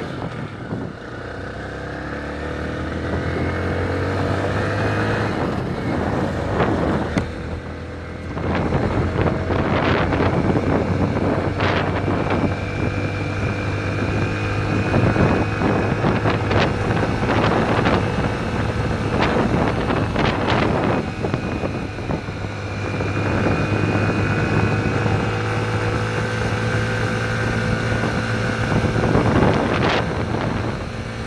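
Yamaha motorcycle engine pulling under acceleration, its pitch rising over the first few seconds. Partway through it dips, as in a gear change or easing off, then climbs again near the end. Through the middle stretch, gusty wind rushes over the helmet-mounted microphone and largely covers the engine.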